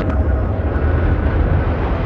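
Jet aircraft engine sound effect: a steady low rumble of the plane in flight, played backwards.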